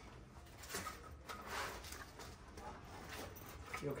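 Faint rustling and scraping of an awning pole being handled and slid into the fabric hem of a roll-up bug screen, a few soft swishes strongest a second or two in.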